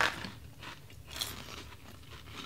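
A crisp fried pork rind being bitten and chewed, a few short crunching crackles.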